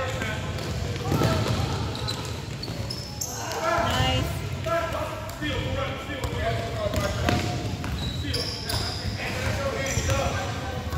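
Basketball dribbled on a gym floor, bouncing repeatedly, mixed with players and spectators calling out across a large gym.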